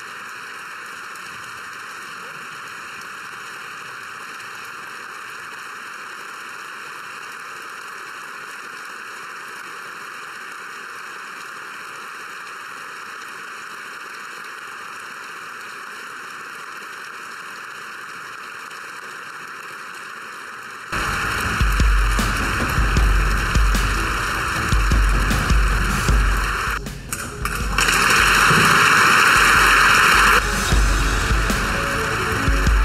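Steady applause from a large crowd of people clapping for about twenty seconds; then loud music with a pulsing bass beat suddenly cuts in.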